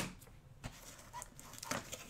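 A sharp click as a hard plastic card case is set down. It is followed by faint rustles and light taps of hands reaching into a small cardboard box.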